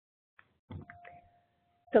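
A faint click, then a single steady electronic tone, like a chime, held for about a second until speech begins.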